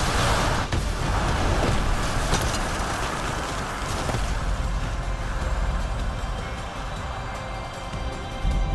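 Animated explosion sound effect from a huge energy-cannon blast: a loud burst right at the start, then a long low rumble of collapsing debris that eases off after about four seconds, under background music.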